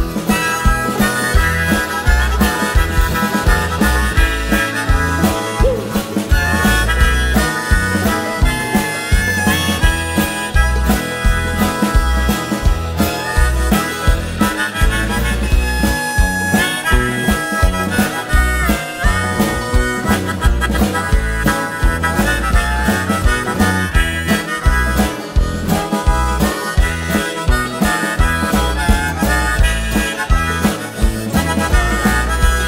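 Harmonica playing an instrumental melody over guitar accompaniment with a steady beat.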